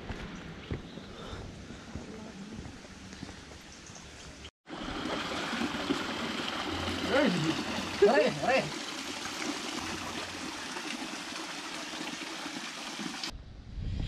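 Spring water running steadily over rocks, starting about a third of the way in. A few short rising-and-falling voice sounds come over it in the middle.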